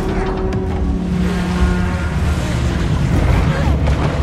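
Film action sound mix: rushing, churning seawater and waves, over sustained tones of the dramatic score.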